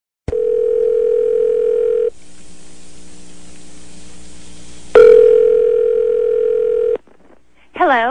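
Telephone ringback tone heard on the calling line: a steady ring of about two seconds, a pause of about three seconds, then a second ring that cuts off after about two seconds as the call is answered.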